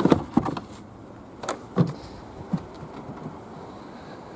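A few light knocks and clicks in the first two seconds as a car's boot floor cover is lowered back over the spare-wheel well, then only low background noise.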